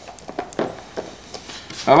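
Wooden stir stick clicking and scraping against the inside of a plastic mixing cup as pigment is stirred into liquid epoxy resin: a few light, irregular clicks.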